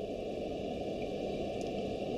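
Steady background hiss and hum, mostly low in pitch, with no distinct event: the room tone of the recording.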